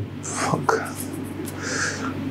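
A man's soft breaths and whispered mouth sounds between sentences, close on a clip-on microphone, over a low steady hum.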